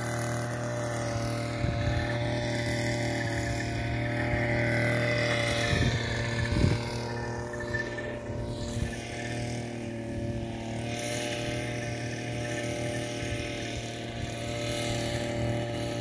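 Motorized insecticide fogging machine running with a steady engine drone at one unchanging pitch while it puts out smoke against dengue mosquitoes.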